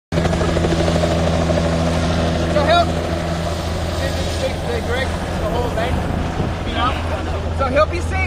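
Helicopter cabin noise: a steady low drone from the engine and rotor, with a hum and its overtones holding level throughout, and faint voices over it from about three seconds in.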